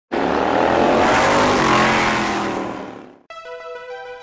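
A motorcycle engine revving up, its pitch climbing and then fading away within about three seconds. Electronic music starts near the end.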